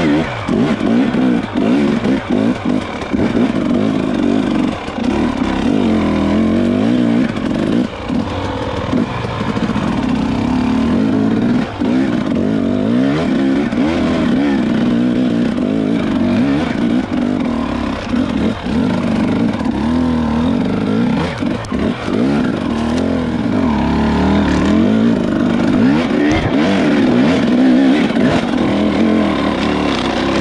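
Dirt bike engine running under load on a trail ride, its revs rising and falling continually with the throttle.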